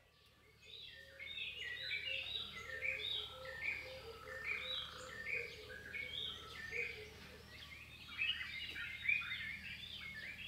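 Birds chirping: a dense chorus of many short, overlapping calls with a lower repeated note underneath, starting about half a second in.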